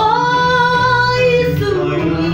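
A woman singing a long held note. She slides up into it at the start and drops in pitch near the end, over a backing track with a low bass line.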